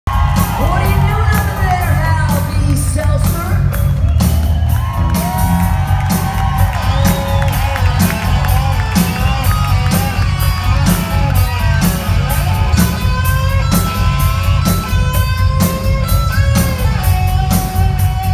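Live rock band playing loudly in a large hall, recorded from the audience: electric guitars, heavy bass and drums keeping a steady beat, with singing over the band.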